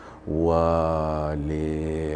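A man's low voice holding one long, nearly level drawn-out vowel for about two seconds, starting just after a brief pause: a hesitation sound while he searches for his next words.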